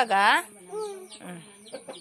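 Domestic hen clucking, with a loud call right at the start and fainter calls after it.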